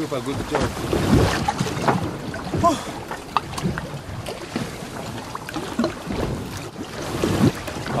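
Wind on the microphone and choppy water around a small open boat: a steady noisy rush with scattered knocks.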